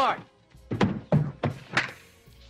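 Dialogue from a film clip: a man's voice speaking a short line, with music underneath.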